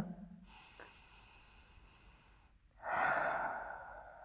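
A woman breathing deeply while holding downward-facing dog: a faint breath, then a louder one about three seconds in that fades away over a second or so.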